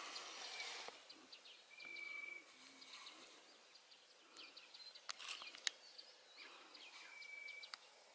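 Faint, quiet outdoor ambience with scattered high chirps and two short, steady whistled notes, one about two seconds in and one near the end, from small animals. A couple of sharp clicks come about five seconds in.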